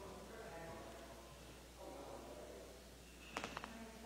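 Faint, distant voices of people talking in a large room, with a brief cluster of sharp clicks about three and a half seconds in.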